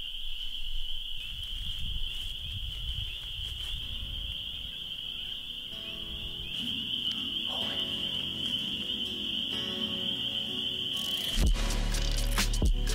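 Background music: soft sustained chords come in around the middle and build, and a stronger beat starts near the end. Underneath it runs a steady high-pitched chorus of calling animals.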